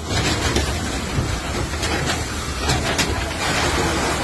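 Large structure fire burning, a loud steady rumbling roar with scattered sharp crackles and pops from the burning houses.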